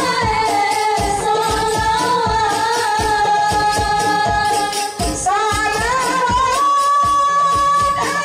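A group of female voices singing sholawat together into microphones, holding long, gliding notes, over hand-struck frame drums and a bass drum beating a steady rhythm. The singing and drumming dip briefly about five seconds in, then carry on.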